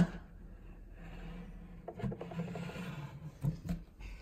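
Faint rubbing and handling sounds as a TDS tester pen is held in a cup of water, with a sharp click right at the start and a couple of light taps about three and a half seconds in.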